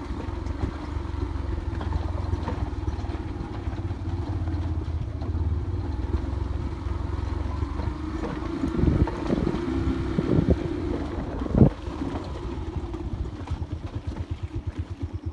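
An engine running at a steady speed, with a low, even hum throughout. A few knocks come after the middle, and a single sharp click near the end.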